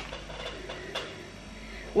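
Soft plastic ketchup pouch crinkling and rustling quietly as it is squeezed, with a few faint clicks.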